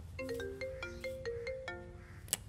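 Mobile phone ringtone: a quick marimba-like melody of short, bright notes, several a second.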